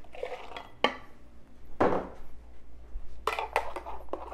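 Kitchenware clinking and knocking on the counter as a latte is poured from a stainless milk pitcher into another cup: a couple of separate knocks, then a quick run of sharp clinks near the end.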